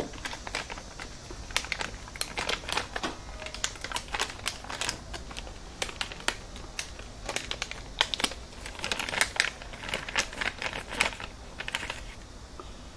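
Plastic film snack sachet being torn open and handled, crinkling with many irregular sharp clicks and crackles.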